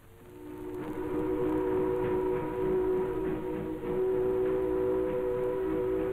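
Steam ship's whistle sounding one long, steady blast in several tones at once, fading in over the first second over a rough background rumble.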